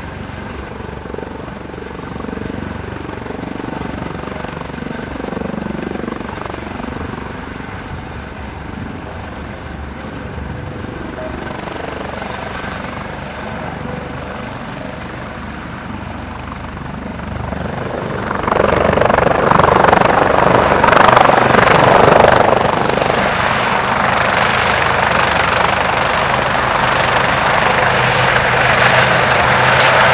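Helibras HM-1 Pantera twin-turbine military helicopter hovering low, its rotor and turbines running steadily. About two-thirds of the way in the sound grows much louder as the helicopter comes close, and it stays loud to the end.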